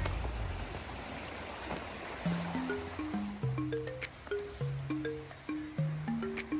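Water of a shallow stream running over rocks, then background music coming in a little over two seconds in: a simple melody of short held notes stepping up and down over a low bass line.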